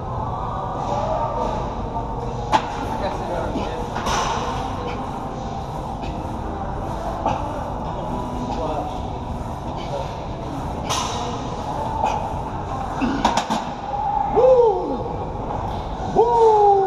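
Busy gym ambience: a steady room hum with distant voices, and a few sharp clanks and thuds of weights and machines, one about two and a half seconds in and a cluster a little before the end.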